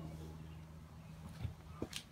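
Quiet background with a steady low hum, and a couple of faint short knocks near the end.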